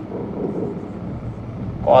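Steady low room hum during a pause in a man's lecturing. Near the end he says the word "cos".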